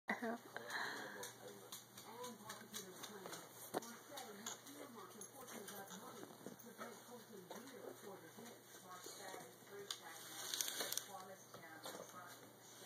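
Faint, indistinct talking in the background, with scattered light clicks and knocks from the handheld camera being moved about.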